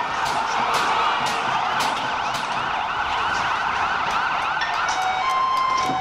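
Police vehicle siren sounding continuously over street noise, with sharp cracks every half second or so. Near the end the siren settles into steady tones.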